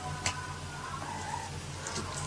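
Quiet room tone: a steady low hum with a single faint tick about a quarter second in.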